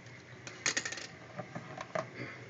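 Plastic weather-station parts being handled over a sink: a quick run of sharp clicks and clatter about half a second in, then a few scattered single clicks.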